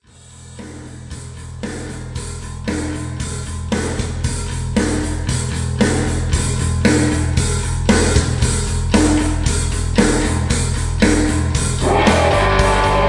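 Loud hard rock with a heavy electric guitar playing a low, driving rhythm riff over a backing track of drums and bass. It fades in over the first few seconds, with a drum hit about twice a second.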